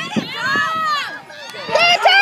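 Raised voices shouting, several at once and unclear, typical of spectators calling out during a youth football play.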